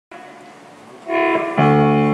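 A live band starting a song, the keyboard leading: faint for about the first second, then keyboard notes come in, joined by fuller chords with bass about half a second later.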